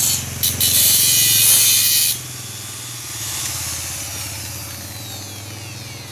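Electric angle grinder cutting through a steel bar for about two seconds, a harsh high grinding noise over the motor hum. Then the disc comes off the metal and the grinder winds down, its whine falling in pitch near the end.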